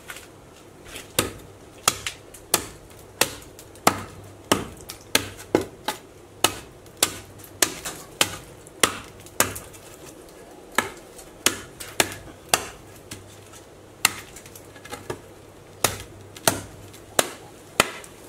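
Repeated hammer blows on a small axe with a long wooden handle, driving the head and haft together against a stump: sharp knocks about one and a half a second, with two brief pauses a little past the middle.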